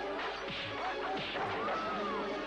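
Film fight sound effects: punches and crashes of bodies and furniture, a few sharp hits, over background music.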